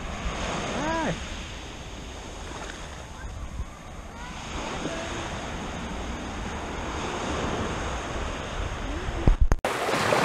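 Small waves washing onto a sandy beach, with wind on the microphone. The sound breaks off abruptly just before the end.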